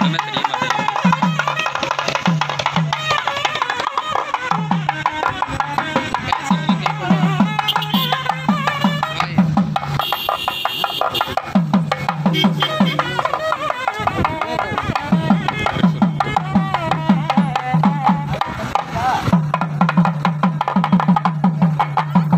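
Hand-held frame drums beaten with sticks in a fast, steady rhythm, breaking off briefly a few times. Voices of a crowd run over the drumming.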